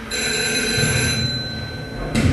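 A high, steady ringing tone made of several pitches at once, starting right at the beginning and cutting off at the end, with a low rumble underneath from about a second in.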